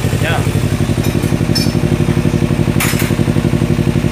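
Kawasaki Ninja 250 FI two-cylinder engine idling steadily at about 1,400 rpm, its even firing pulses clearly audible.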